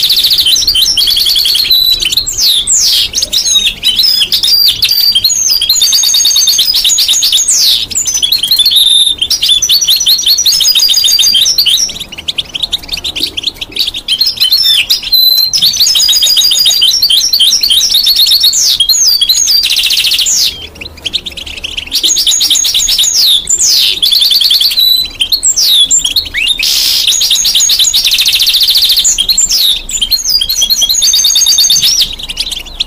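European goldfinch singing close by: a long, loud run of fast, high twittering and trilled phrases, with short breaks about twelve seconds in and again around twenty-one seconds.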